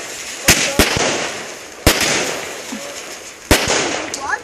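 Consumer firework cake (Iron Man 25-shot barrage) firing: four sharp bangs, two close together about half a second in, one near two seconds and one about three and a half seconds in, with a continuous fizzing crackle of the bursting stars between them.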